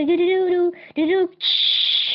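A voice singing a held, slightly wavering note, then a short second note, followed about two-thirds through by a loud, high hiss.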